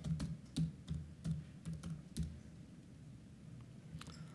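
Typing on a computer keyboard: a run of about eight quick keystrokes over the first two seconds or so, then the typing stops.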